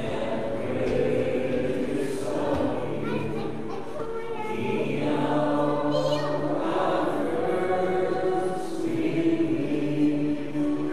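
A hymn sung by a group of voices, held notes moving from one to the next every second or two.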